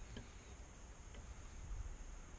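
Faint small metallic clicks of pliers gripping and twisting an intake valve stem on a Briggs & Stratton horizontal-shaft engine, over a low room hum. The valve turns loosely at top dead centre on the compression stroke, a sign that it is not seating.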